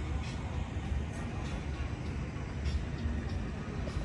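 Steady low rumble of a vehicle engine idling.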